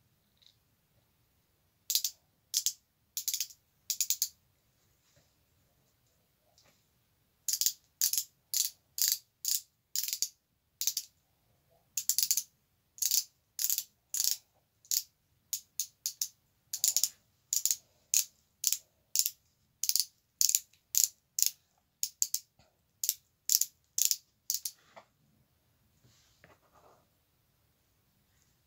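A small hand-held mechanism clicking like a ratchet in quick repeated strokes, about two a second. It starts a couple of seconds in, pauses briefly a few times, and stops shortly before the end.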